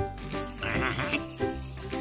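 A cartoon prize wheel spinning, with a rapid ratcheting tick under light background music.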